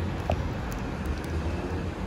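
Steady outdoor street ambience: a low rumble of road traffic with a faint general city hum.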